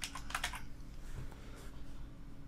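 Typing on a computer keyboard: a quick run of key clicks in the first half second, then a few fainter scattered ones.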